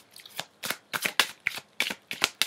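A deck of tarot cards being shuffled by hand: a quick, irregular series of short card slaps and riffles.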